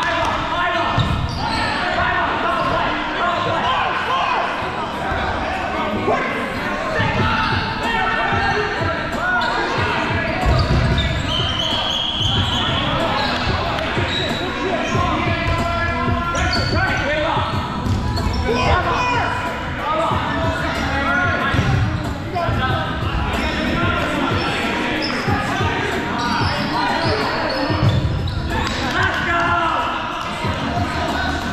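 Foam dodgeballs being thrown and hitting the wooden gym floor and players, giving many short dull thuds. Players shout and call out throughout, all echoing in a large gymnasium.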